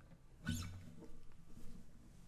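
Faint handling noise after the guitar has stopped: a knock with a short squeak about halfway through, then a few small clicks and rustles.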